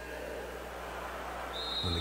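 A hiss of noise that swells gradually, joined about one and a half seconds in by a steady high tone, as the sound effects open a radio beer commercial.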